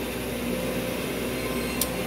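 Steady low background hum of machinery, with one brief high click near the end.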